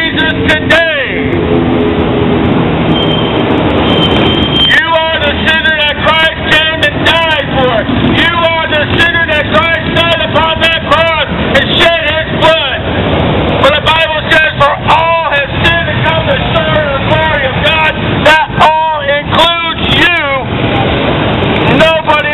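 A loud voice shouting in short, emphatic phrases over the noise of motorcycles and cars passing on the street. Between about one and five seconds in the voice drops out, leaving engine and road noise.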